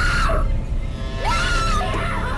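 A young woman screaming in terror, twice: one cry cuts off just after the start and a second, high and held, comes past the middle. Both ride over a low, steady rumble.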